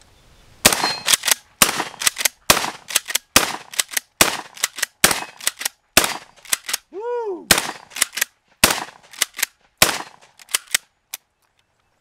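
Mossberg Shockwave 590M 12-gauge pump-action shotgun firing shot after shot for about ten seconds, with the pump worked between shots.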